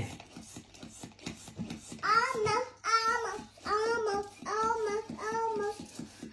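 A young child's high voice in a repeated sing-song chant, about seven identical rising-and-falling syllables at about two a second, starting about two seconds in.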